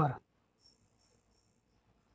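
A spoken word ends in the first instant. Then comes near silence with a faint, thin, high-pitched steady tone that fades out after about a second and a half.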